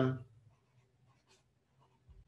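Faint scratching strokes of a felt-tip marker writing a word on paper.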